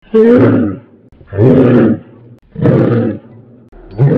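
Large dog barking in deep, drawn-out barks, one about every 1.2 seconds, four in all.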